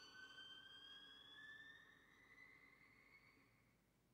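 Solo violin holding one faint, high bowed note that slides slowly upward in pitch and fades away near the end: the dying last note of the piece.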